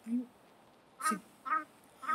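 A Shiba Inu dog making short, high-pitched little calls. A brief low sound comes right at the start, then two quick calls follow about a second in.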